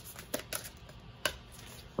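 A few soft clicks and taps from a deck of tarot cards being handled, three of them spaced out over two seconds.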